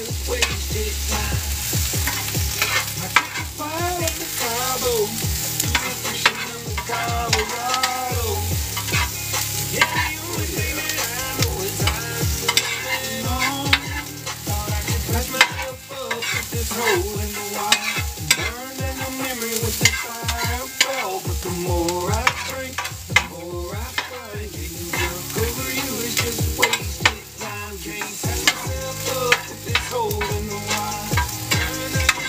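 Sliced peppers and onions sizzling in a hot pan while a utensil stirs and scrapes them, with frequent clicks of the utensil against the pan.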